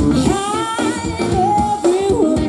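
Live pop-country band with a female lead singer: her voice rises into one long held note over electric bass, guitar and drums.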